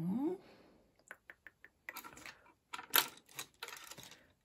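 Small hard clicks and taps from a gel paint pot being handled and its lid unscrewed: a quick run of light ticks, then a few louder clacks, the loudest about three seconds in.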